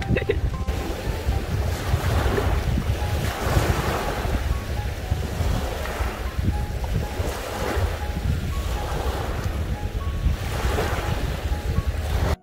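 Small waves washing onto a sand-and-pebble beach, the surf swelling and fading every second or two, with strong wind buffeting the microphone.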